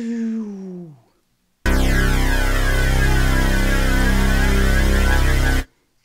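Synth bass note from two layered Ableton Wavetable instances, one detuned a few cents against the other, held for about four seconds with phasing sweeping through it. A short falling glide in pitch comes before it, in the first second.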